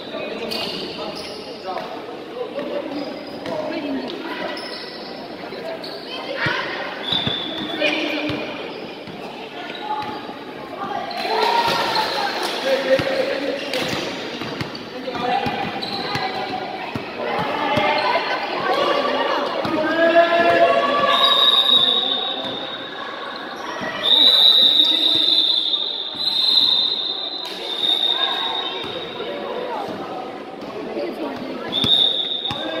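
Basketball being dribbled and bounced on a hard indoor court during a game, with players' and spectators' voices over it, echoing in a large hall.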